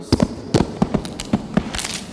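A person tumbling down a flight of stairs: a string of irregular thumps and knocks, about eight in two seconds.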